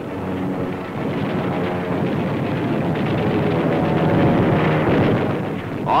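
Dubbed newsreel sound effect of an aircraft engine, a loud roar with a steady drone that swells toward the last couple of seconds.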